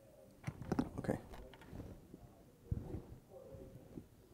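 Soft clicks and mouth noises close to a microphone, a cluster in the first second and another about three seconds in, with a faint murmur of voice.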